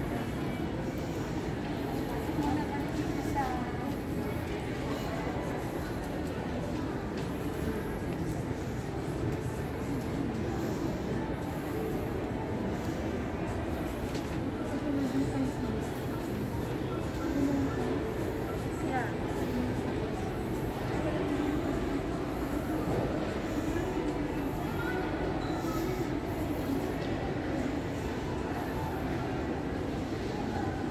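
Shopping-mall ambience: a steady low rumble with indistinct distant voices.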